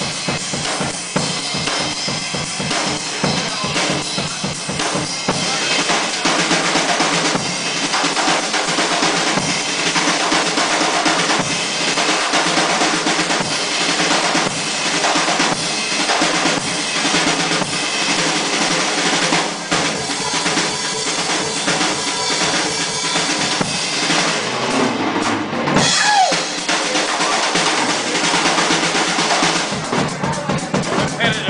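Drum solo on a full drum kit: rapid strikes on the bass drum, snare and toms, with rimshots and cymbals, played continuously. About 25 seconds in, a sliding tone cuts across the drumming.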